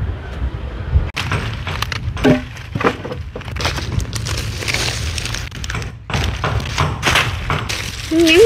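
Dry coconut palm fronds and sticks crackling, snapping and rustling as they are pulled apart and gathered by hand, in irregular sharp snaps over a steady low rumble.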